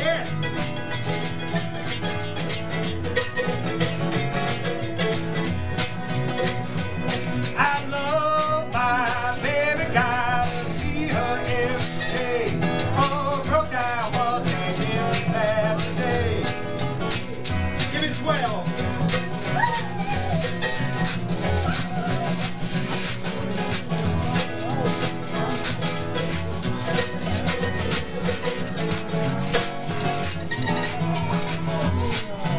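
Acoustic jug band playing: strummed acoustic guitar and mandolin over the thump of a washtub bass, with hand percussion. A wavering, bending melodic line stands out about a quarter to halfway through.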